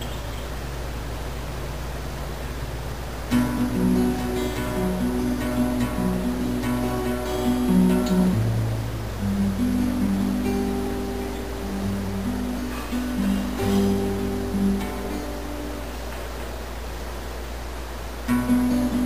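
Acoustic guitar played as picked single notes one after another, starting about three seconds in and thinning out near the end. A steady low hum and hiss from the recording runs underneath.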